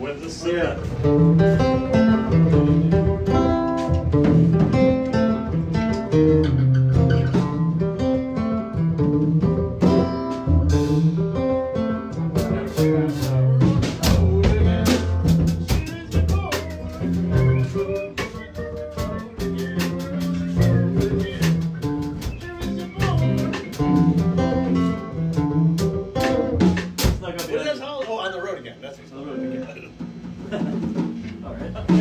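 Live band improvising: plucked guitar lines over a low bass line, with a drum kit that plays more busily about halfway through.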